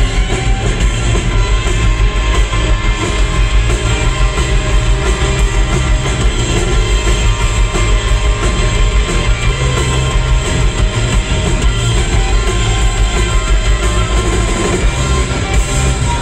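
Live rock band playing an instrumental passage with guitar, drums and a horn section of trombone and trumpet, loud through the stage PA with a heavy low end. It is heard from among the audience.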